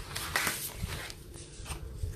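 Card stock and craft supplies handled on a work table: a short papery rustle about half a second in, then a soft knock.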